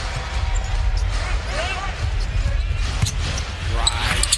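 Basketball being dribbled on a hardwood arena court, the bounces heard over a steady crowd rumble, with indistinct voices.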